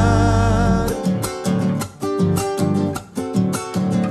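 A man singing a long held note with vibrato over a nylon-string classical guitar; about a second in the voice stops and the guitar carries on alone with rhythmic strummed chords.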